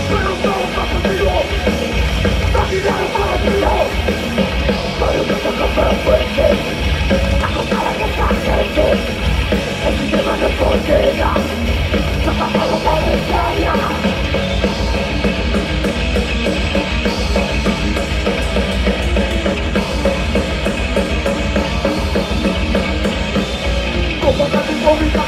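A thrash metal band playing live and loud without a break: distorted electric guitars over fast drumming on a full drum kit.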